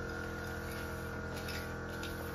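Faint light ticks of thin fiber cage spokes being handled and fitted into a metal bird-cage frame, a few about one and a half seconds in, over a steady background hum.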